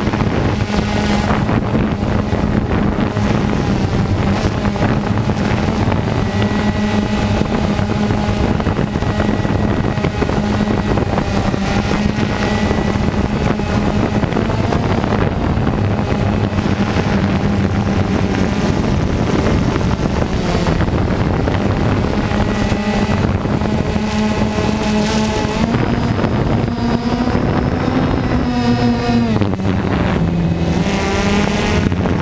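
DJI Phantom 2 quadcopter's four electric motors and propellers running with a steady whining hum, picked up by the GoPro mounted on the drone, with wind rushing on the microphone. Near the end the pitch rises a little and then drops sharply as the motors change speed.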